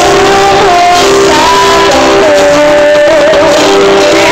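Live band music with a woman singing a ballad into a microphone, loud and steady.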